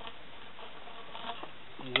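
Steady background hiss of a small-room recording, with a few faint, indistinct small sounds just past the middle; a man's voice starts speaking near the end.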